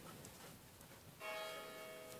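A bell-like chime struck once about a second in, its several tones ringing on and slowly fading.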